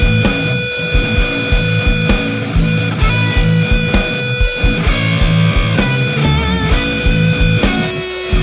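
Distorted electric lead guitar through the Audio Assault Shibalba amp sim, with extra treble and a little more mid, playing held notes that slide and, about three quarters through, waver with vibrato. It plays over a rock drum track with a steady kick drum.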